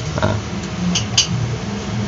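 Handling noise from a plastic ceiling fan's housing and power cord as the cord is threaded through the hanger cup, with two quick light clicks about a second in, over a steady low hum.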